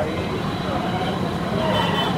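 Steady busy street noise: traffic and a murmur of voices.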